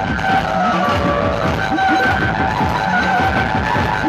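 A procession drum band, many large barrel drums beating a fast, dense rhythm, with a high melody held on steady notes that step in pitch over the drums.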